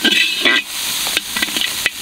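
Chopped shallots, garlic and ginger frying with a steady sizzle in a wide metal pan. A spatula stirs them, scraping on the metal several times.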